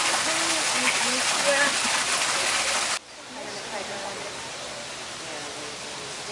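Steady rushing noise, like running water, with faint voices in the background; about three seconds in it cuts off abruptly to a much quieter rush.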